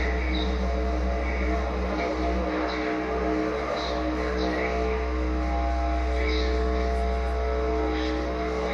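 Death-industrial electronic music played live: a heavy, steady low drone with sustained tones held above it and scattered noise on top, at a constant loud level.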